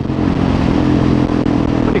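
Husqvarna 701 Supermoto's single-cylinder engine running at steady revs on the move, with wind noise over the camera microphone.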